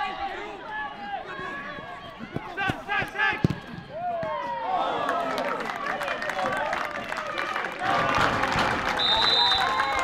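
Footballers shouting and calling to each other on the pitch, with a sharp thud of the ball being struck about three and a half seconds in. Louder shouting and cheering follow from players and spectators, and a short, high referee's whistle sounds near the end.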